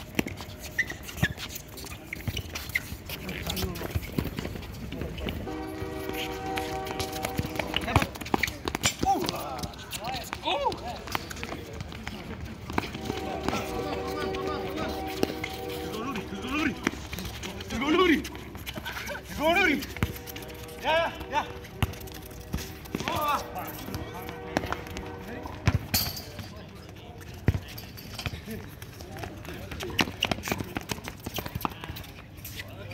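Players shouting and calling to each other during a fast pickup soccer game on a hard court, with sharp knocks of the ball being kicked. Music plays underneath in several stretches.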